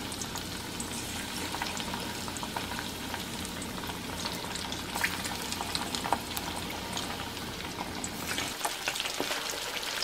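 Pieces of marinated pomfret shallow-frying in hot oil in a small pan: a steady sizzle with scattered pops and crackles.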